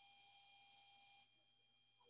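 Near silence, with faint steady high-pitched tones.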